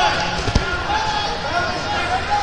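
A single heavy thud about half a second in, a wrestler's body slamming onto a foam wrestling mat in a takedown, over the steady hubbub of voices in a large tournament hall.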